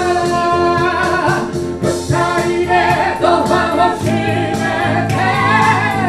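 A woman singing a song into a microphone, backed by a small live band of electric bass, keyboard and flute over a steady beat.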